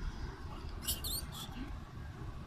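A long-tailed macaque gives a few short, high-pitched squeaks about a second in, over a steady low rumble.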